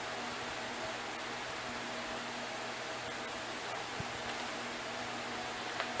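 Steady hiss of background noise, with a faint low hum and a single faint click about four seconds in.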